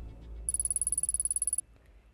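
Title-card sound effect: a fast electronic ticking with a high thin whine over a low drone, starting about half a second in and cutting off suddenly after about a second, as the section title appears.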